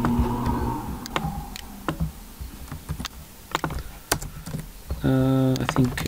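Computer keyboard typing: scattered, irregular key clicks. Near the end a person hums a short held "mmm" for about a second.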